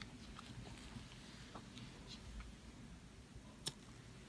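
Faint wet mouth and glove-handling sounds as a loose extra tooth is wiggled out of a numbed mouth by gloved fingers with gauze, with one sharp click near the end.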